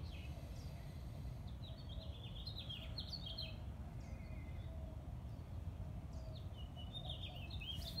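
Small birds chirping in quick runs of short high notes, once in the middle and again near the end, over a steady low background rumble.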